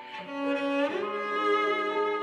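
Cello playing a slow melody in long, sustained bowed notes, swelling louder about half a second in and moving to a new note about a second in.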